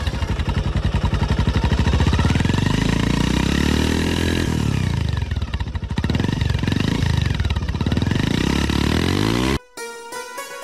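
Motorcycle engine running and revving, its pitch climbing over the first few seconds, then dropping and climbing again several times. It cuts off suddenly near the end.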